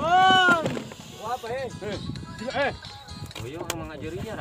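A voice singing in long arching notes, loudest in the first half second, followed by shorter rising-and-falling phrases.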